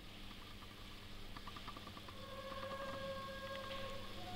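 Faint steady low hum and hiss with a few light clicks; about two seconds in, a faint held tone comes in and stays.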